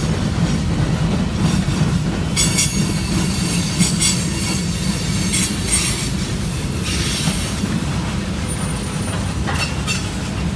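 Freight train cars, covered hoppers and boxcars, rolling past close by with a steady rumble of wheels on rail. From about two seconds in until about seven and a half seconds, high-pitched wheel squeal rides over the rumble.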